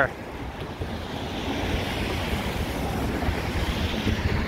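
A steady rush of road traffic on a wet road, with wind on the microphone, growing a little louder after the first second.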